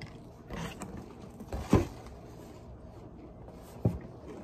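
A few brief knocks and thumps of things being handled on a table, the loudest a little under two seconds in. A cardboard cereal box is picked up near the end.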